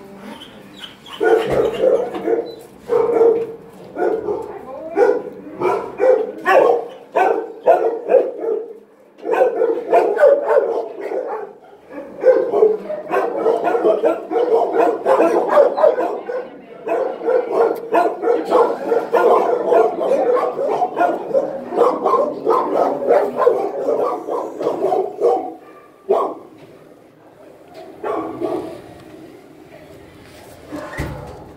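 Dogs barking, short barks starting about a second in and overlapping almost without a break from about halfway through, then dying down near the end.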